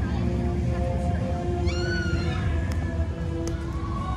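Background music with long held notes. About two seconds in, a brief high-pitched call rises and then falls.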